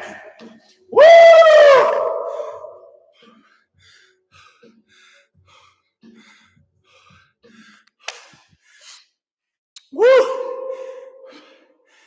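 A man letting out two loud, drawn-out wordless vocal exhales, one about a second in and another near the end. He is winded from finishing a hard round of squats.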